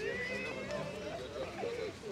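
Guests' voices in the background, with one high, drawn-out voice sound in the first second.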